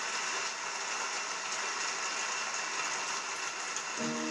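Studio audience applauding steadily, heard through a television's speaker.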